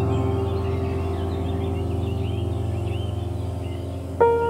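Ambient music: a sustained low chord slowly fading, with birds chirping over it.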